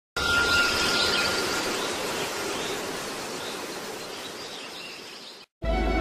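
A steady hiss-like noise that fades slowly over about five seconds and then cuts off abruptly. Music with held notes starts right after, near the end.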